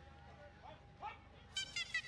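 Quiet arena background, then about one and a half seconds in the traditional Muay Thai ring music starts, a reedy Thai oboe (pi java) playing a wavering melody.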